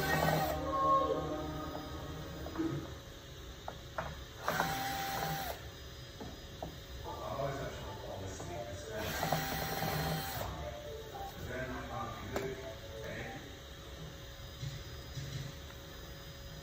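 A cordless drill runs in two short bursts of about a second each, roughly four and a half and nine seconds in, driving screws in a wooden frame. Background music plays throughout.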